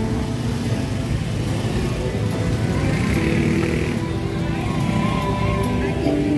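Street-market ambience: road traffic, cars and motorbikes, running under music with a steady melody.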